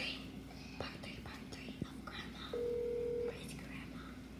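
A phone's calling tone: one steady beep a little under a second long, about two and a half seconds in, over a quiet room with a few faint clicks.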